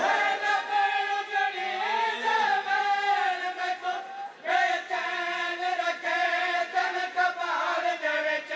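A group of men chanting a Punjabi noha (Shia lament) in chorus, their voices rising and falling with the refrain, with a brief pause just after four seconds in.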